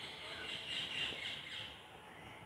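Faint, high-pitched bird chirping in the background.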